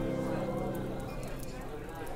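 The last chord of a medieval-style folk tune dying away over about a second and a half, leaving tavern ambience: a murmur of indistinct crowd chatter with scattered light knocks and clicks.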